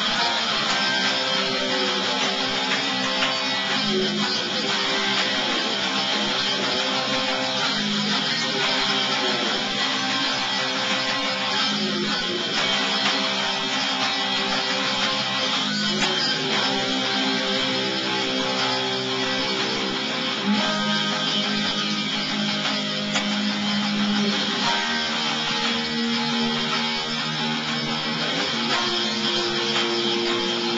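Band practice recording, instrumental: strummed electric guitar chords with bass guitar underneath, playing steadily.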